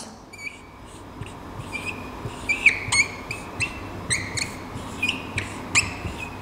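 Dry-erase marker squeaking on a whiteboard while writing: a run of short, high squeaks and little strokes, a few each second, as the letters are drawn.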